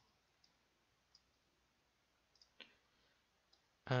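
A few faint, scattered clicks of computer keyboard keys and mouse buttons, about six in all, the clearest a little past halfway.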